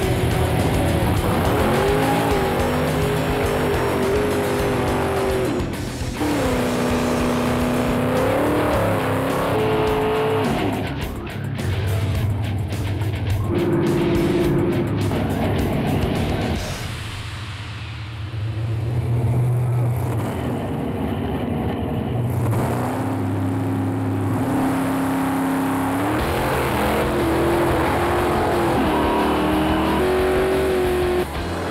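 Nitrous-fed V8 drag cars, a small-block Chevy and a big-block Ford, revving up and down before the launch, with tire squeal, over background music.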